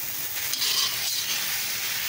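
Chicken, carrot, celery and enoki mushrooms sizzling in a hot wok as they are stirred and tossed with a spatula, with a louder rush of sizzle about half a second in.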